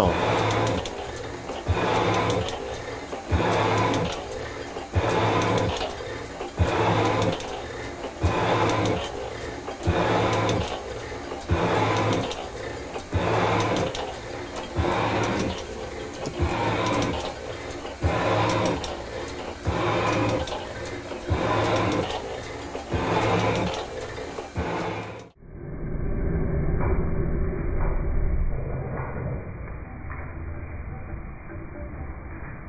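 Metal-cutting shaper stroking back and forth at about one stroke a second, its tool bit cutting cast iron on each stroke under a heavier feed that it is taking. About 25 seconds in, the sound cuts abruptly to a duller, rumbling recording of the same cut, heard close up.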